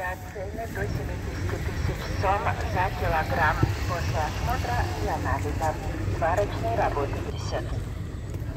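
Background voices of several people talking at some distance, over a steady low rumble.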